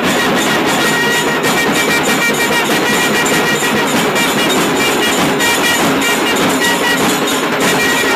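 Several long brass horns blown together in long held, blaring notes, over a steady beat of drums.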